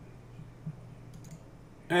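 A single soft computer-mouse click about two-thirds of a second in, then a few fainter ticks, over a low steady hum. A man's voice starts speaking at the very end.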